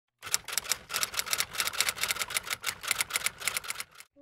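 Typing sound effect under an animated title card: a fast, even run of crisp key clicks, about eight a second, that starts just after the beginning and stops just before the end.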